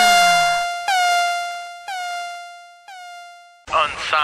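A DJ-style air-horn sound effect: one pitched horn note blasted four times about a second apart, each blast quieter than the one before, like an echo dying away. A falling cry fades out in the first half second, and speech starts just before the end.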